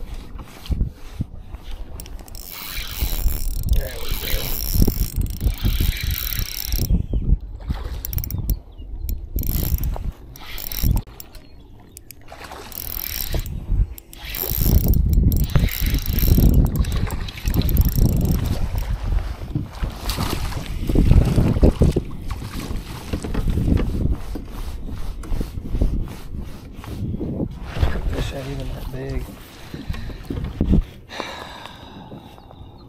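Spinning reel being cranked, its drag ratcheting, while a hard-fighting fish is played on the line; wind rumbles on the microphone.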